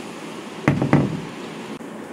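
Two dull knocks about a third of a second apart, a little over half a second in, over a steady low hiss.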